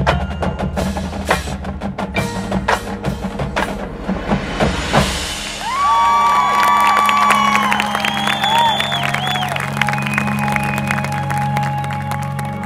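High school marching band performing: the percussion section's drums and mallet keyboards play a busy passage of sharp strikes, then about halfway through the sound changes to held notes, a steady low drone under higher sustained tones that slide and step in pitch.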